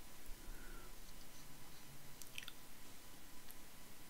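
Faint crackling and small ticks of very thin, delicate embellishment pieces being handled and fiddled with between the fingers, with a short cluster of crackles about two and a half seconds in.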